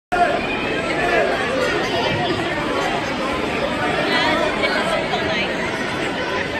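Crowd chatter: many people talking at once in overlapping babble, at a steady level with no single voice standing out.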